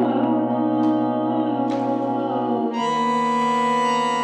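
Bandoneón and electric keyboard playing sustained, held chords in an instrumental passage, with no voice. The harmony shifts to a new chord a little under three seconds in.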